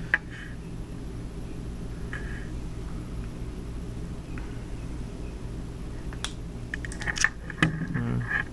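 Steady low background hum, with a few light clicks of wires and small parts being handled, one at the start and several near the end.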